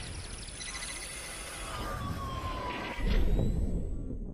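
Electronic outro sound effects for an animated logo: stuttering, glitchy synthesized sounds over a slowly falling tone, then a deep hit about three seconds in that fades away.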